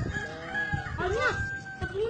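A rooster crowing, one long held call lasting nearly two seconds, with voices underneath.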